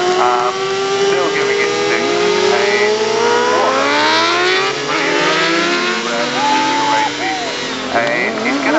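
600cc racing motorcycles, among them a 2009 Kawasaki ZX-6R, held at high revs with the rear tyres spinning in burnouts. Several engines rise and fall in pitch at once, and one climbs slowly over the first few seconds.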